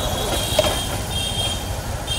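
Reverse warning beeper of a Toyota Innova backing up: a high beep repeating about once a second, over a steady low traffic rumble.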